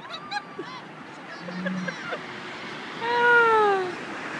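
Animal calls: a few short calls, then one loud, drawn-out call that falls in pitch about three seconds in.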